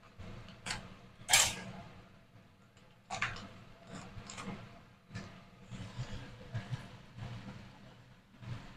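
Kitchen scissors snipping open a foil-lined spice packet, with the packet crinkling; the loudest, crispest snip comes about a second and a half in. Softer rustling of the packet and small clicks follow.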